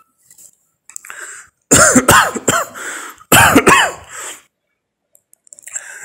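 A man coughing on a recorded phone voice message: a faint cough about a second in, then two loud, hoarse coughing fits about two and three and a half seconds in.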